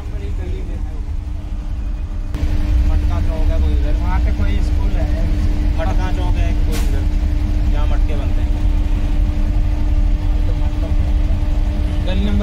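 Auto-rickshaw engine running in slow city traffic, heard from inside the open cabin as a steady low rumble. It grows louder about two seconds in, when a steady hum joins, and voices talk over it.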